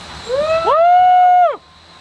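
A person's loud, high-pitched cheering whoop ("woo!"). It swoops up in pitch, holds for about a second, then drops off suddenly.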